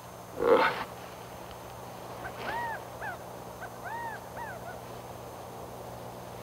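A man's short grunt about half a second in. Then a bird calls twice, each time a rising-and-falling note followed by a shorter one, over a steady low hum.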